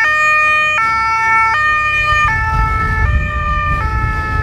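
Police motorcycle siren sounding a two-tone hi-lo pattern, switching between two pitches about every three-quarters of a second. A low engine rumble grows under it in the second half.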